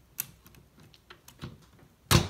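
Small clicks and taps of a 3D-printed plastic bracket and its bearing being squeezed down over a drive shaft by hand, with one sharp click about a fifth of a second in and fainter ticks after it.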